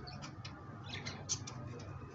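High flyer pigeons in a loft: a few short, high chirps, the loudest just past a second in, over a steady low hum.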